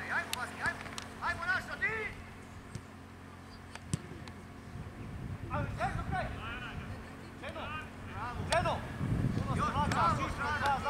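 Young footballers shouting and calling to each other during play, in short high-pitched bursts that come in clusters, loudest near the end. A single sharp knock is heard about four seconds in.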